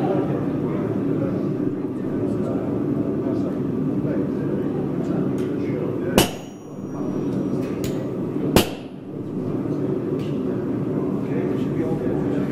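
Two sharp hammer blows on steel about two and a half seconds apart, the first with a brief high ring, over a steady low background noise.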